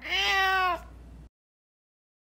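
A cat meowing once, a single call under a second long that rises and then falls slightly in pitch.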